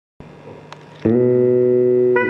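Karaoke backing track starting: a faint hum with a single click, then about a second in a loud, steady, sustained chord begins the song's introduction.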